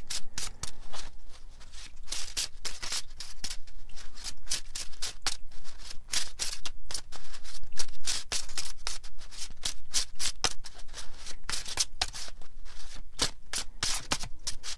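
A deck of oracle cards being shuffled by hand: a quick, continuous run of crisp card flicks and slaps, loudest about the middle.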